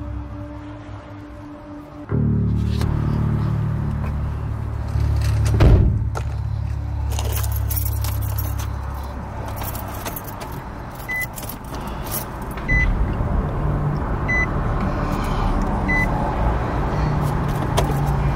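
Car keys jangling and a car engine starting and running with a steady low rumble, followed by the car's warning chime beeping evenly about once every second and a half.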